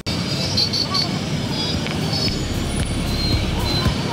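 Street traffic noise with a motorbike engine running close by, its low rumble growing stronger in the second half as the bike approaches.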